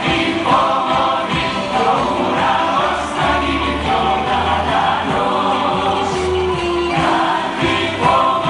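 Greek popular song performed live: a mixed group of male and female singers sing together in unison over a band with a steady beat and bass line.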